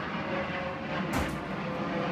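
Airplane passing overhead: a steady rumbling roar with a low hum, and a brief rustle just past a second in.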